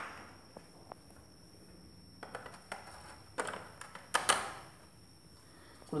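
Faint scattered clicks and knocks of handling and movement, a little louder just after four seconds in, over a steady faint high-pitched whine.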